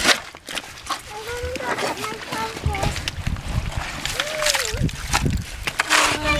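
Shovel digging into wet, rocky tidal mud for soft-shell clams, with wet squelching and sloshing and a couple of sharp knocks near the start. People's voices, a child's among them, talk over it.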